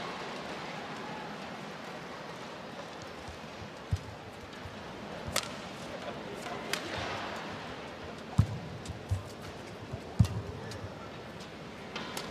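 Badminton rally: sharp racket strikes on the shuttlecock, about six of them a second or so apart from about four seconds in, over a steady arena crowd murmur.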